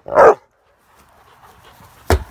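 A large pit bull gives one short, loud bark about a quarter of a second in, then goes quiet.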